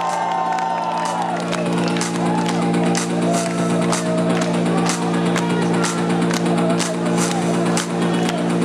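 Electronic music from a DJ set over an arena sound system: a sustained low synth chord with a regular ticking beat, about two ticks a second. Crowd whoops and cheers in the first second or so.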